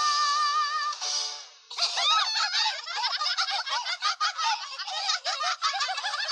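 A high sung note held with vibrato over the song's backing ends about a second and a half in. Then several high cartoon voices break into laughter together.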